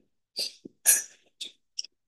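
A few short, hissy breath sounds or sniffs from a person close to the microphone. The loudest comes about a second in.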